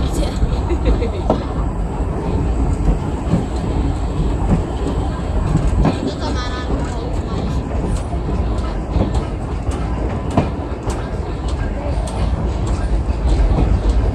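Steam-hauled train rolling slowly along the track, heard from on board: a steady rumble with irregular clicks and knocks of the wheels over rail joints.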